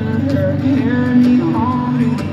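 Live reggae band music over a festival sound system, heard loud from the crowd: a steady bass line under sliding melody lines.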